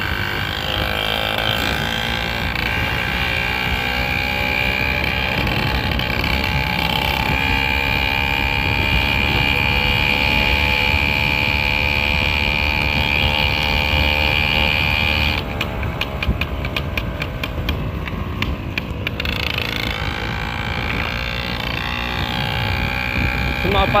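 Small 50cc engine on a motorised bicycle running steadily while riding. About two-thirds of the way through, its pitch drops and a fast ticking sounds for a few seconds, then the engine picks up again.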